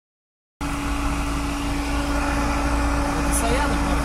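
Steady car cabin noise heard from inside a slowly moving car: the engine running with a low hum and a single steady tone over it, setting in abruptly about half a second in.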